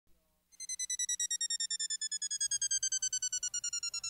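A rapidly pulsing electronic beep, about eight pulses a second, starting about half a second in, with its pitch slowly falling throughout.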